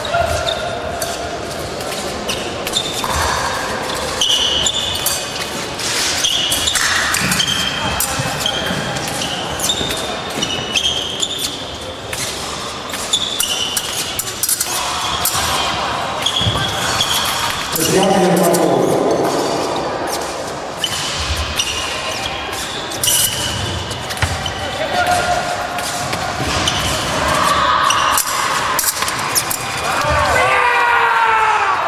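Echoing sports hall with épée fencers' footwork: repeated thuds of feet on the piste over a wooden floor, with short high squeaks among them. Indistinct voices are heard, loudest about two-thirds of the way through.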